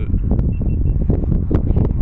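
Wind buffeting the microphone: a loud low rumble with irregular gusty thumps.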